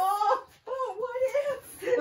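A woman laughing in long, high, wavering cries: one breaks off about half a second in, a second runs for about a second, and a short one comes near the end.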